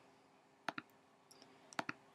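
Faint clicks of a computer pointing-device button, selecting points on screen and opening a menu. They come as two quick pairs about a second apart.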